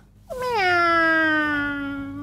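A woman imitating a cat: one long drawn-out "meow" that starts about a third of a second in, falls in pitch and then holds a steady note to the end.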